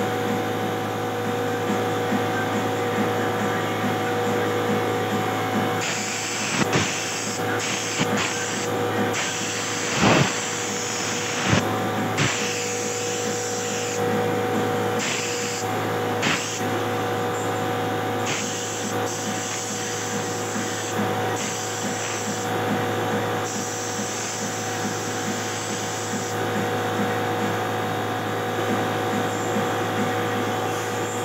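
Air compressor running steadily under repeated bursts of hiss from a compressed-air paint spray gun, each a second or two long, as purple paint is sprayed onto scooter body panels. A few sharp knocks, the loudest about ten seconds in.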